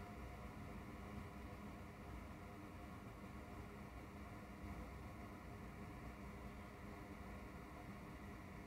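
Faint steady background hum with no distinct events: near-silent room tone at a repair bench.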